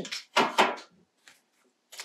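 Brief handling noises, something being moved or set down: two close together about half a second in, then a shorter one near the end.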